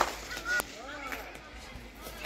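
A cricket bat strikes the ball once, sharply, at the very start. About half a second in comes a short honk-like call, followed by pitched calls that rise and fall.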